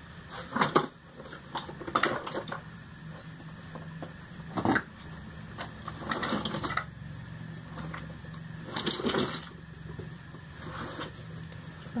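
Plastic packaging rustling and crinkling in irregular bursts as it is handled, over a steady low hum.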